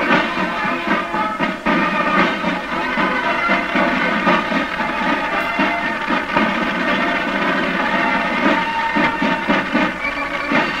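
Brass marching band playing a march: held brass chords over a drum beat.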